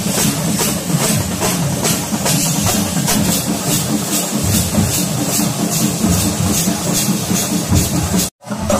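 A troupe of drummers playing large waist-slung drums together in a fast, steady beat, loud and driving.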